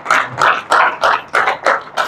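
A man whispering short phrases of prayer close into a handheld microphone, about three breathy syllables a second.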